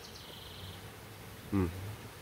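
A flying insect buzzing faintly, most clearly in the first second.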